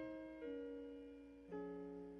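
Soft, slow keyboard chords played under a pause in the preaching. Each chord is held and fades slowly, with a change of chord about half a second in and again about a second and a half in.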